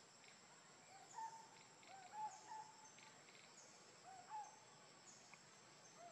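Faint outdoor ambience: a steady high insect drone with a few soft, short calls from an animal, rising and falling in pitch, in small groups about a second, two seconds and four seconds in.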